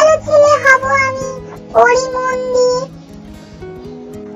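A Bengali children's rhyme sung over a light musical backing, in two long held notes. The voice stops about three seconds in, leaving only the accompaniment.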